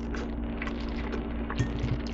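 A person quietly chewing a mouthful of macaroni and cheese, with a few faint clicks of a metal fork in the bowl, over a steady low hum.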